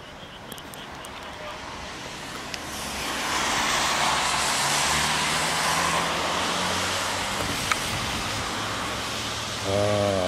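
A motor vehicle passing by: tyre and engine noise swells over about a second, holds for a few seconds with a low engine hum, then slowly fades away.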